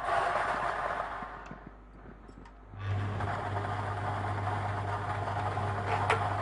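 Lottery draw machine: plastic balls clatter as they are released into the clear acrylic mixing chambers. After a short lull about three seconds in, the machine's motor starts with a steady low hum, and the balls keep rattling as they mix.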